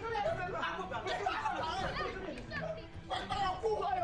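Several people's voices talking and shouting over one another, with no other sound standing out.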